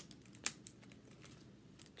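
A few small clicks and light handling noises as hands work small craft pieces of pipe cleaner and googly eyes, with the sharpest click about half a second in and another just after.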